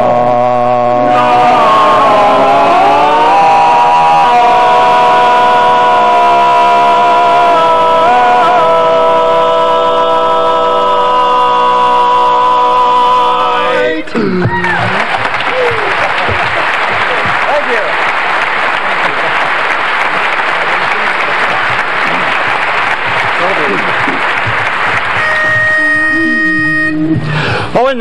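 Barbershop quartet singing a long held final chord of a song in close four-part harmony, with the voices shifting a few times before cutting off together about 14 seconds in. Audience applause follows for about ten seconds. A short steady note sounds near the end.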